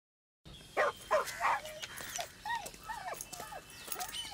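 A dog barking: three quick barks in the first second and a half, then several shorter calls that rise and fall in pitch.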